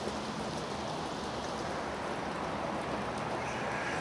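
Steady rain falling, an even hiss that holds without a break.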